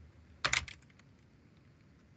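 Computer keyboard typing: a quick run of keystrokes about half a second in, then only faint room noise.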